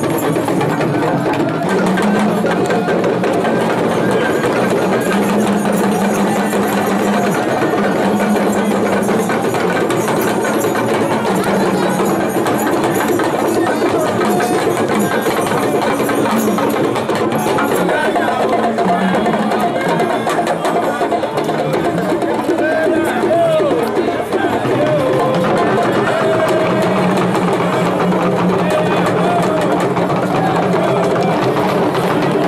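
Traditional Egungun drumming on laced hourglass talking drums, played as a busy, continuous rhythm. Crowd voices are mixed in.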